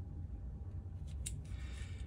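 Faint handling sounds of a brass tip being fitted by hand onto a small soldering iron, with a couple of light clicks a little past the middle, over a steady low hum.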